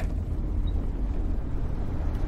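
Steady low rumble of a car driving, used as an ambient sound bed.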